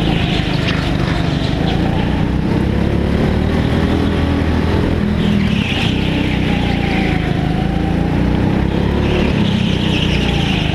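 Racing go-kart engine running hard under throttle, heard onboard, its pitch dipping and climbing again as the kart goes through the turns.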